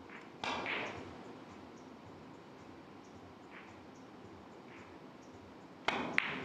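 A quiet hall with a short sharp noise about half a second in. Near the end, the crisp click of a cue tip striking the cue ball on a carom billiards table.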